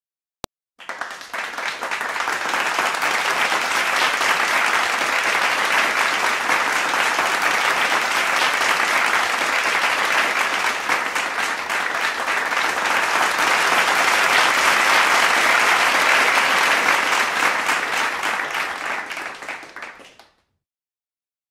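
Applause from a crowd clapping, starting abruptly after a moment of silence, holding steady, and fading out near the end.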